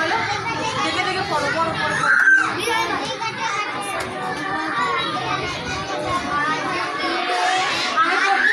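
Young children's voices chattering and calling out over one another, a classroom hubbub, with one louder voice about two seconds in.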